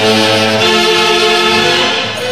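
Orquesta típica del centro playing a tunantada: a saxophone section and clarinets holding long sustained notes in harmony, the chord moving on near the end.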